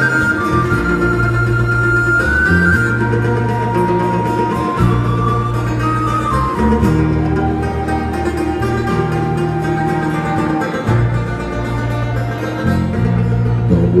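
Live acoustic band playing an instrumental break: strummed acoustic guitar and banjo over an electric bass line that steps from note to note, with a held, sliding melody line on top.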